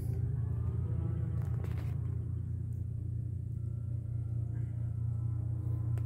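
Steady low mechanical hum with a faint rumble; no gunshot.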